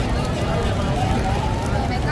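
Busy street ambience: a steady low traffic rumble with indistinct voices in the background.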